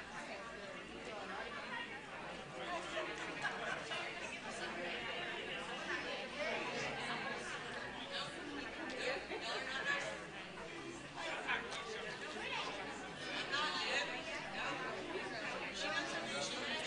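Indistinct chatter of many people talking at once, with no single voice standing out: a congregation gathered and talking among themselves.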